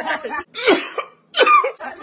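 Two sharp coughs about 0.8 s apart, the second the louder, as a person coughs from the burn of hot sauce in the mouth and throat, with laughter at the end.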